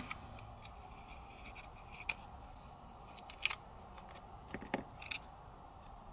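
A few faint, sharp clicks and light taps of a grip panel being worked off a pistol frame, the loudest about three and a half seconds in.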